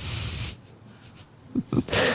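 A man's short, breathy exhale close to the microphone, lasting about half a second, then quiet with a few small mouth sounds near the end.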